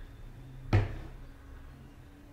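A single sharp knock about three quarters of a second in, over a faint low hum.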